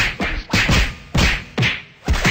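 Blows of a staged fight, a rapid run of about four sharp whacks in two seconds, each with a short falling tail.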